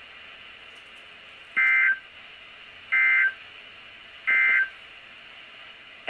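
Weather radio receiver sounding the NOAA Weather Radio SAME end-of-message code: three short, loud bursts of warbling two-tone digital data, about 1.3 seconds apart, marking the end of the Special Marine Warning. A faint steady radio hiss runs between the bursts.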